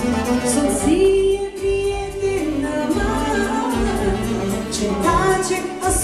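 Live band playing party music: a sung melody of held, gliding notes over a steady accompaniment, with saxophone and violin in the band.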